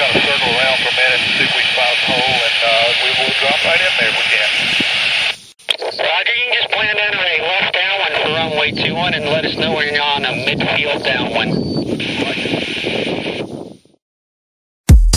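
Voices talking over an aviation radio, thin and hissy, with a brief break about five and a half seconds in as one transmission ends and another begins; the radio audio cuts off shortly before the end.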